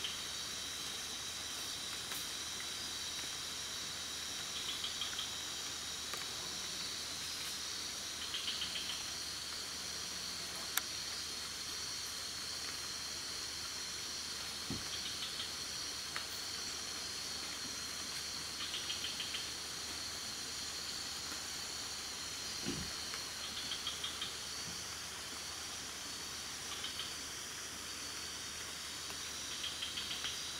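Night rainforest insect chorus: a steady high-pitched buzzing, with a short rapid chirp repeating every four to five seconds. A couple of faint knocks and a single click stand out briefly.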